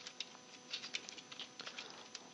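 Computer keyboard being typed on: about a dozen faint, irregularly spaced key clicks as a short phrase is typed.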